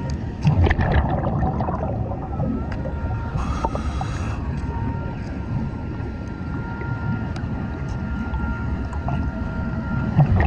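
Underwater sound on a scuba dive: a steady low rumble of water and breathing gear, with a hissing rush of exhaled bubbles about three and a half seconds in. Over it, steady beeping tones from the underwater metal detector, which keeps going off on trash in the mud.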